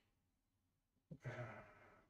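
Near silence, then about a second in a drawn-out, breathy 'uh' hesitation from a person's voice, fading away.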